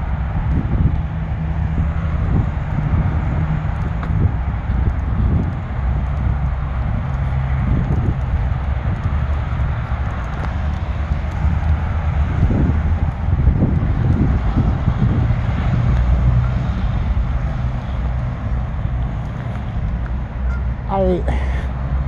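Wind buffeting a phone's microphone: a loud, uneven low rumble, with handling noise as the phone is carried.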